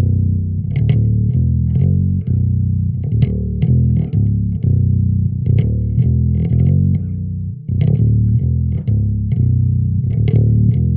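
Ernie Ball Music Man StingRay five-string bass with active pickups, played through a Trace Elliot Elf 200-watt mini bass head and a 1x10 cabinet. It plays a run of plucked notes, several a second, with the amp's bass turned up and a brief break about three-quarters of the way through.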